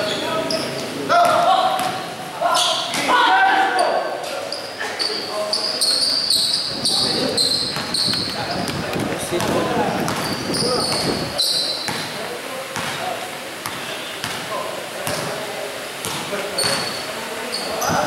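Basketball being dribbled on a hard gym court, with repeated sharp bounces, short high sneaker squeaks and crowd and player voices echoing in the hall.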